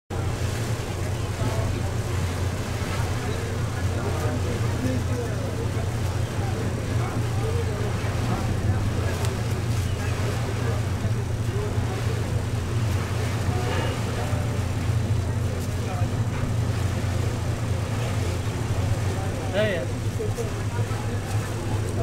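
Steady low drone of a river boat's engine heard from on board, unchanging throughout, with indistinct voices of people talking over it.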